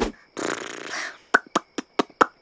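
Cartoon fart sound effect: a breathy blast, then a quick run of short pops.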